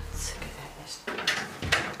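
Knocks and clatter of things being handled at a wooden cabinet, mostly in the second half, like a drawer being worked.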